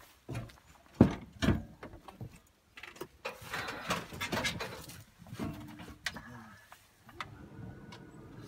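Someone climbing into a tractor cab. Boots strike the cab steps twice, hard, about a second in. Clothing rustles and there are a few short creaks as he settles into the seat.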